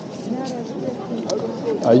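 Many people talking at once in a dense pedestrian crowd, a steady babble of overlapping voices; a louder voice close by starts speaking near the end.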